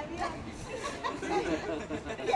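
Several people talking over one another and laughing.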